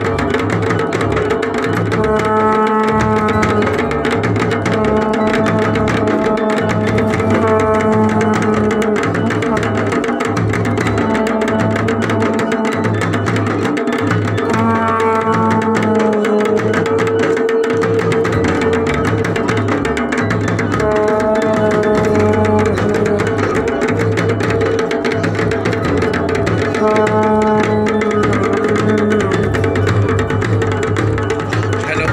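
Drums playing a steady, fast beat. Short held melodic phrases come in over them every few seconds.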